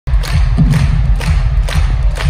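Arena crowd clapping together in time, about two claps a second, over a heavy, booming bass drum beat from the stage.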